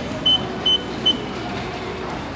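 IC card charge machine beeping, short high beeps about two and a half times a second, the prompt to take the card once the top-up is done. The beeps stop about a second in, leaving a steady station background hum.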